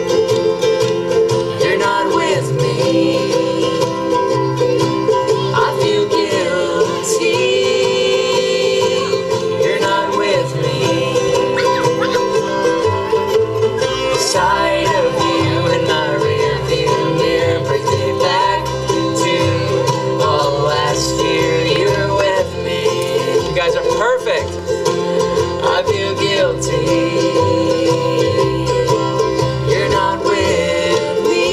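Live acoustic string band playing an upbeat folk song: ukuleles and acoustic guitar strumming, violin and mandolin, and upright bass keeping a steady beat.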